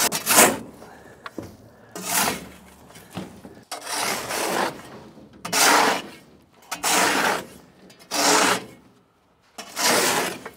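Shovel scraping across the rusty steel floor of a dump trailer, pushing leftover sand and debris, in about seven strokes with short pauses between them.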